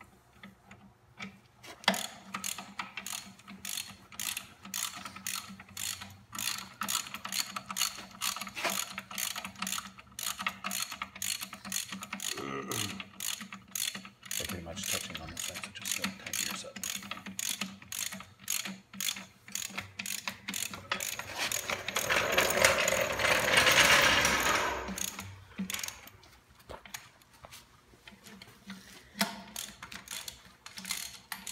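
Hand ratchet wrench clicking at a few clicks a second as bolts are run in on a transmission housing, with a louder stretch of rapid ratcheting about three-quarters of the way through.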